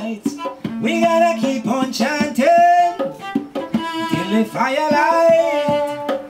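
Male voice singing a Nyabinghi chant over a bowed cello, with strokes on a Nyabinghi hand drum; the voice holds notes and slides between them.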